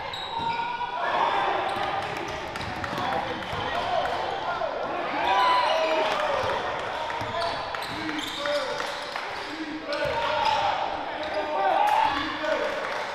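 Live game sound in a basketball gym: a basketball bouncing on the hardwood floor now and then, under indistinct shouts and calls from players and spectators, echoing in the hall.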